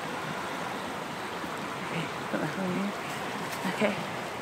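Steady rushing of flowing water, an even wash of noise running under the whole stretch.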